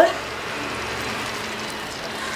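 Thick tomato sauce sizzling in a pan on high flame, a steady even hiss.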